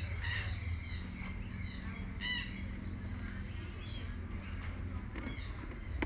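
Birds chirping in short scattered calls, including a quick trill about two seconds in, over a steady low background rumble. A few light clicks come near the end.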